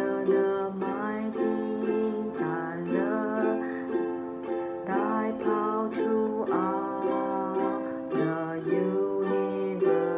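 Ukulele strummed in chords at a steady pace, the chord changing every second or so.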